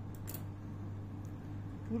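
Two quick light clicks as small spring-loaded thread snips are set down on a wooden table, over a steady low hum.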